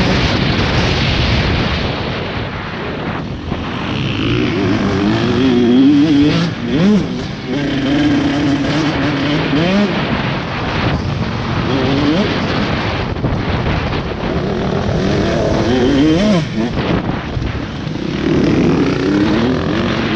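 KTM 150 SX two-stroke dirt-bike engine heard from the rider's helmet camera at race pace, revving up and dropping again through gear changes several times, with wind rushing over the microphone.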